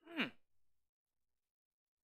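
A man's short "hmm", falling in pitch, then near silence.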